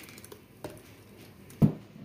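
Blended beetroot pulp dropping into a steel mesh strainer over a steel pot, with soft wet handling sounds, a light click about halfway and one louder knock near the end.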